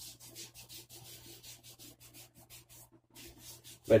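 Hands rubbing together in a quick run of soft, even strokes, spreading beard oil between the palms.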